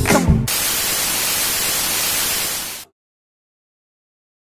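Pop music cuts off abruptly about half a second in and gives way to a steady static hiss like white noise, which stops dead a little under three seconds in, leaving silence.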